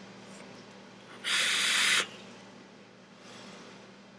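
Vaping on an e-cigarette: a loud airy hiss about a second in, lasting under a second, then a fainter breathy hiss about three seconds in as a cloud of vapor is blown out.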